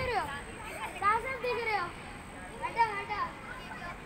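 Children shouting and calling out while playing a running game, three high-pitched calls spread across a few seconds.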